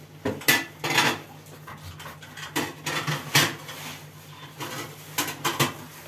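Irregular kitchen clatter of knocks and clinks: a knife striking a wooden cutting board as a raw chicken is cut up, with pans and utensils being handled.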